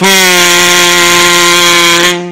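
A loud, steady buzzer-like tone held at one unchanging pitch, starting abruptly and lasting about two and a half seconds.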